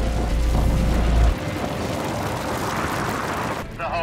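Loud, rushing roar of a wildfire burning along a road, with a deep rumble that cuts off about a second in.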